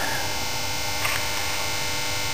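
Steady electrical hum with a faint whine, level and unchanging, with a slight blip about a second in.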